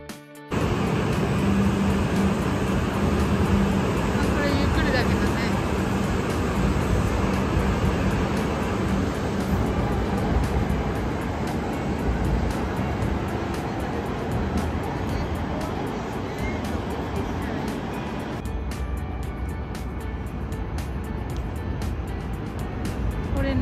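E5 series Shinkansen bullet train running past the platform: a loud, steady rushing roar of the train on the tracks that starts abruptly and eases somewhat near the end.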